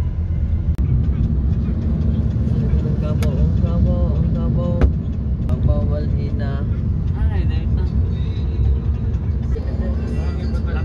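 Steady low rumble of a moving car heard inside its cabin, road and engine noise from driving on a wet road. Indistinct voices come in over it from about three seconds in, and there are a few sharp clicks.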